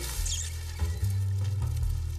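Low background music with a brief faint high squeak about a quarter of a second in: a live rat stirring in the straw pile.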